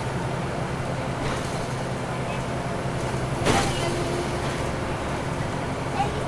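Inside a 2009 NABI 40-SFW transit bus under way: its Caterpillar C13 diesel engine and the road give a steady low drone. A brief clatter comes about three and a half seconds in.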